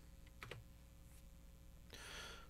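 Near silence with a single faint computer keystroke about half a second in.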